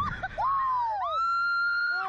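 Riders screaming on a slingshot reverse-bungee ride: short yelps, a long falling cry, then a high scream held steady for about a second near the end.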